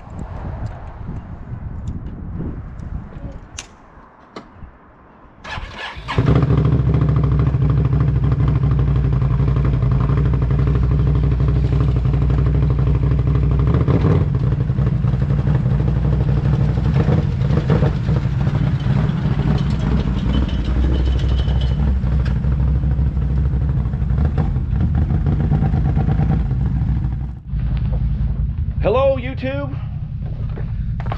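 A Can-Am Renegade XMR quad's V-twin engine catches about six seconds in and then idles steadily. It had been reluctant to start, which the owner puts down to a possibly dead battery.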